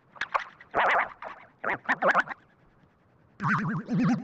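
Short cartoon-style sound effects with a wobbling pitch: four quick blips, a brief pause, then a longer wobbling sound starting near the end.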